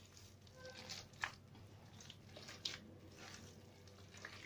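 Soft, faint squishing of buttery dough being squeezed and kneaded by hand on a marble countertop as the butter is worked into it, with a couple of small clicks, about a second in and again past halfway.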